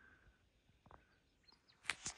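Near-silent outdoor quiet with a few faint, brief bird chirps, and a short sharp scuff near the end.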